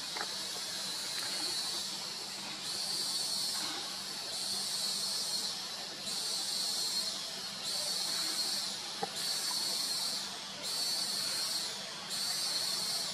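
Cicadas buzzing in a high-pitched chorus that swells and breaks off in pulses of about a second each.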